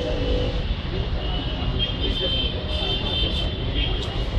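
Steady low rumble of background road traffic, with distant voices.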